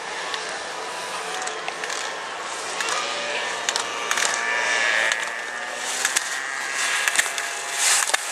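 Slalom skis scraping and carving on hard, icy snow as racers pass close by, with scattered sharp knocks as the hinged slalom gate poles are struck.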